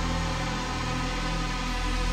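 Dark ethereal live band music: sustained, droning held chords with electric guitar.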